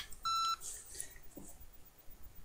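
A single short electronic beep: one steady high tone, lasting about a third of a second, a quarter of a second in.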